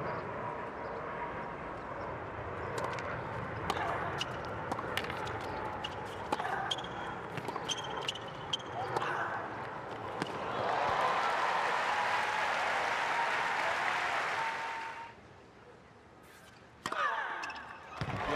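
Tennis point on a hard court: a series of sharp racquet strikes and ball bounces over a low crowd murmur. About ten seconds in, the crowd breaks into cheering and applause for about four seconds, which then cuts off suddenly.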